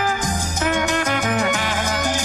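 Instrumental salsa music: violin and trumpet play a stepping melody over a repeating bass line and percussion.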